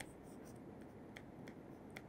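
Faint ticks and scratches of a stylus writing on a tablet screen, a handful of light taps over quiet room tone.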